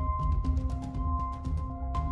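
Background music: held synth-like tones changing pitch every so often, over frequent light percussion and a steady low bass.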